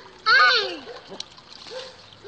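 A toddler's short, loud squealing laugh about a quarter second in, with water splashing in a plastic tub.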